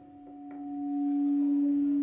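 Audio feedback howl on a live phone-in line: a single steady tone that swells up over about the first second and then holds loud. It is the sign of the caller's television sound looping back through her phone.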